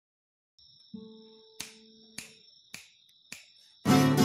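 Five finger snaps at an even pace, about one every 0.6 s, counting in a blues song over faint held tones; acoustic guitar strikes in loudly near the end.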